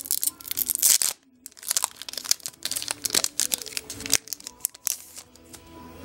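Foil Yu-Gi-Oh booster pack wrapper crinkling and tearing as it is opened by hand, in quick irregular rustles with a short pause about a second in.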